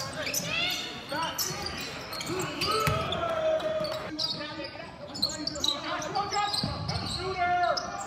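A basketball being dribbled on a hardwood gym floor, with players and spectators shouting and calling out throughout.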